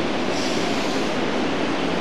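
Steady, even background hiss with no speech.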